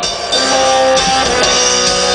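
Amplified electric guitar ringing out held chords, changing to a new chord about a second in.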